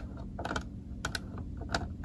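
Scattered plastic clicks and taps of a DVD disc being handled and set into an open portable DVD player, over a steady low hum.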